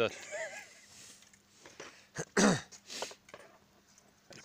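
Short snatches of voices, and one loud throat-clearing about two and a half seconds in.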